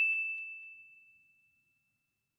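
A single bell 'ding' sound effect: one clear, high ringing tone, already sounding at the start and fading away over about a second and a half.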